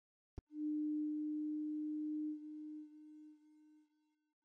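A single click, then a steady low electronic pure tone that holds for about two seconds and then fades out in steps.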